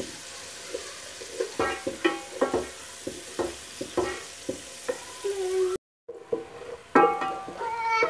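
A wooden spatula scrapes and stirs sliced onions frying in oil in an aluminium pot: a run of short, squeaky scraping strokes over a faint sizzle.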